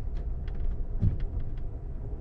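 Amtrak passenger coach running along the track, heard from inside the car as a steady low rumble with a few faint light ticks.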